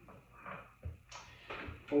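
Faint handling noise from someone seated with an electric guitar: a couple of soft low thumps and short rustles, with no notes played.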